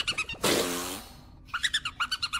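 Cartoon creature voice: rapid, high-pitched chirping calls, broken about half a second in by a loud, harsh hissing cry lasting under a second, then fast chirping again, about ten calls a second, near the end.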